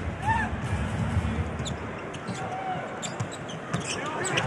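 A basketball being dribbled on a hardwood court, repeated low thuds over the steady background noise of the arena crowd.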